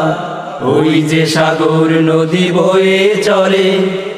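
Voices singing a Bengali Islamic song in a chant-like style, with long held notes and a short dip about half a second in.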